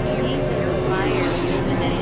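Experimental electronic drone: layered steady synthesizer tones over a low hum, with small warbling pitch glides above, speech-like but wordless.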